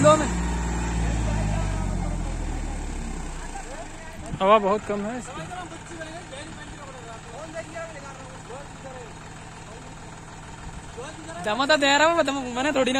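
A John Deere 5105's three-cylinder diesel engine labouring under load as the tractor pulls a loaded earth trolley up out of a muddy pit; its deep running note is loudest at first and fades after about three to four seconds. Men's voices shout about four seconds in and again near the end.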